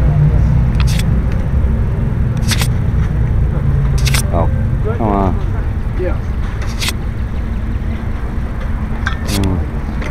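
Steady low rumble of idling vehicles, with camera shutters clicking now and then and a few brief distant voices in the middle.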